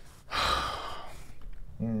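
A man's heavy, breathy sigh lasting about half a second, shortly after the start; speech begins near the end.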